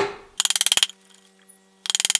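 Japanese chisel working in a cedar mortise: a sharp knock with a short ring, then two brief bursts of rapid clicking, one about half a second in and one near the end.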